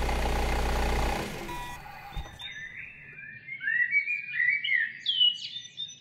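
Steady engine-and-traffic rumble fading away over the first two seconds, then birds chirping and twittering in quick gliding calls.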